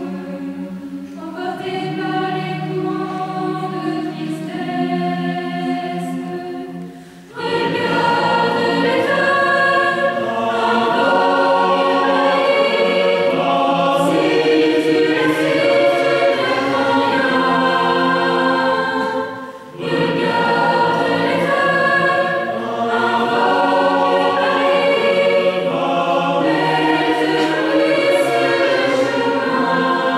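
Mixed choir of young men and women singing, softly at first, then much fuller and louder from about seven seconds in, with a short breath-pause near the two-thirds mark before the singing resumes.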